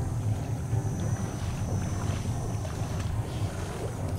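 Wind buffeting the microphone on an open shore, a steady, uneven low rumble.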